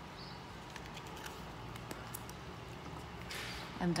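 Quiet room with a few faint light clicks of a small plastic paint cup being handled over a foam bowl and set down, and a brief soft rustle near the end.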